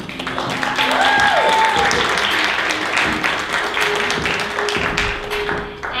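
Audience applauding, with a short cheer rising and falling about a second in.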